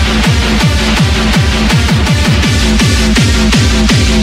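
Happy hardcore / hardstyle electronic track. A hard kick drum hits on every beat, several times a second, its pitch falling on each hit, under sustained synth lead chords.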